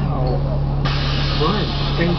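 A burst of compressed-air hiss from the articulated NovaBus LFS bus's pneumatic system, starting suddenly a little under a second in and cutting off about a second later, over the steady low hum of the idling bus engine.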